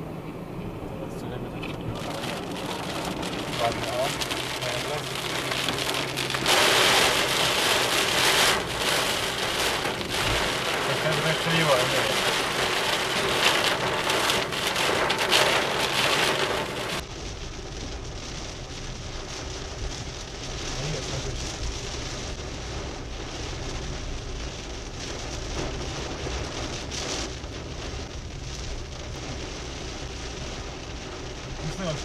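Heavy rain hitting a moving car, heard from inside, growing louder a few seconds in and heaviest through the middle. About halfway through the sound changes suddenly to a duller, quieter run of rain and road noise.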